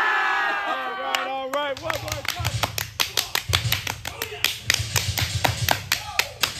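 A group of men shouting a long held yell in unison, as in a haka-style intimidation chant, dying away over the first second and a half. Then quick, sharp hand claps and slaps in a steady rhythm, with low thumps under them.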